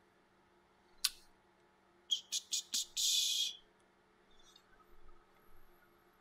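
Small clicks and a brief rustle on a desk microphone: one sharp click about a second in, a quick run of four clicks just after two seconds, then a short hissing rustle.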